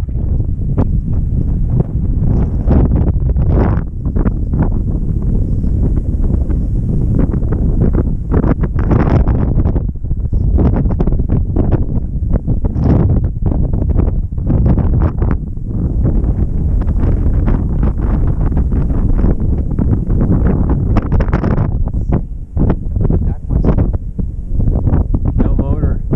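Strong wind buffeting the camera microphone: a loud, gusty rumble that rises and falls with each gust.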